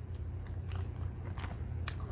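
Faint close-miked chewing and mouth sounds of children eating spaghetti, with a few soft clicks, over a steady low hum.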